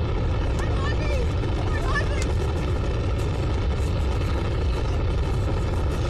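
Steady low rumble of a space shuttle launch, with faint laughter over it in the first couple of seconds.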